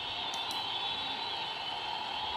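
Steady background noise with a thin, faint high whine, and a couple of soft clicks.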